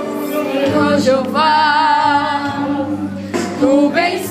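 Church choir singing a Portuguese gospel song, one voice holding a long note with a wavering vibrato through the middle.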